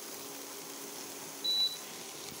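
A single short, high electronic beep about one and a half seconds in, over a low steady hum that stops at the same moment.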